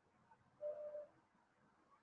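Near silence, with one faint steady tone lasting about half a second, starting a little over half a second in.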